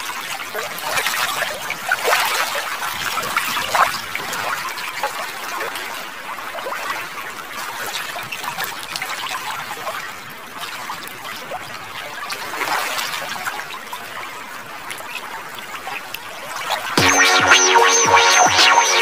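Steady hiss of running, trickling water with fine crackles. About a second before the end it gives way to louder electronic music with a steady beat.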